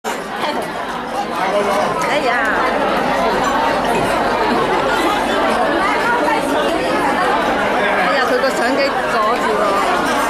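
Many people talking at once in a large hall: a seated audience chatting, with no music playing yet.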